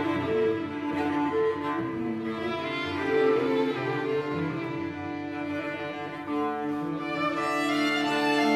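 Chamber-ensemble music in which bowed cello and violin carry long held notes; the sound swells and brightens as higher notes enter near the end.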